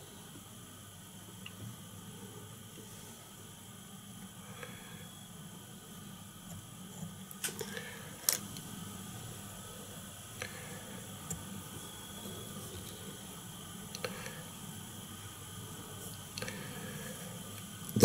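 Quiet steady hum with a few faint, short clicks and taps, the sharpest about eight seconds in: the small handling noises of hands tying a fly, applying glue and fur to the hook.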